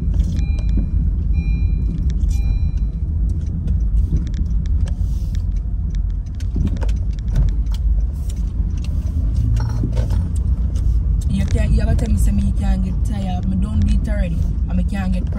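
Low, steady road and engine rumble of a moving car heard from inside the cabin, with scattered light clicks and clatter. A high electronic beep repeats several times in the first few seconds.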